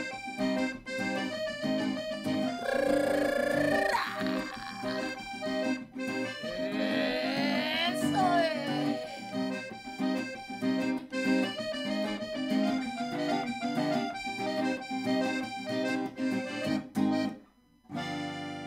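Piano accordion and acoustic guitar playing an instrumental cumbia passage with a steady beat, breaking off briefly just before the end.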